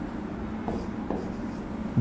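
Faint pen strokes and light taps on a writing board as lines of a diagram are drawn.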